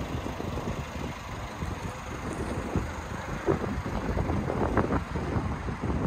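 Wind buffeting the microphone: an uneven low rumble with gusty peaks.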